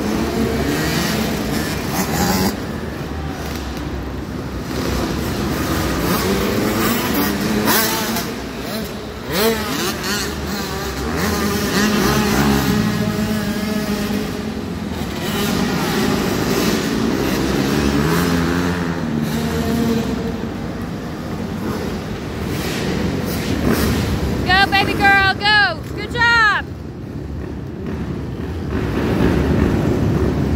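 Several small youth motocross bikes running and revving on an indoor dirt track, their engine notes rising and falling as they accelerate and back off. A burst of sharp, high-pitched rising and falling tones comes in about 25 seconds in.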